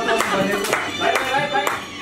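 Hands clapping to a steady beat, about two claps a second, along with a song and voices. The clapping and singing drop off briefly near the end.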